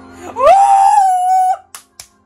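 A man's high-pitched whoop of excitement ("Woo!"), rising then held on one note for about a second, followed near the end by two short clicks.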